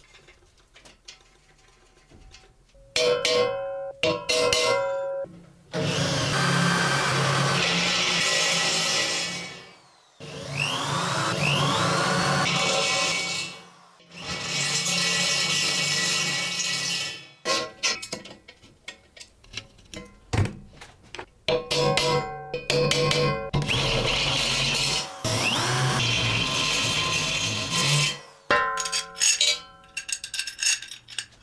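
Power drill with a step bit boring holes through a square steel tube, in about five runs of three to four seconds each with short pauses between.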